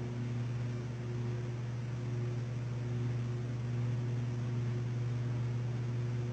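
A steady low machine hum with an even hiss over it, unchanging throughout.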